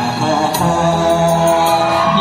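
A man singing a Kannada film song into a microphone through a PA loudspeaker, drawing out long held notes that change pitch every half second or so.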